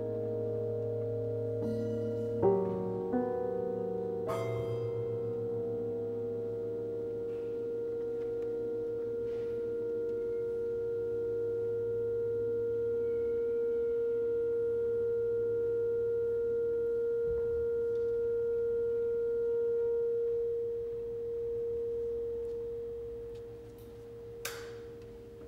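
Grand piano in an experimental contemporary piece: a few struck chords in the first few seconds, then one steady tone held for about twenty seconds that fades near the end.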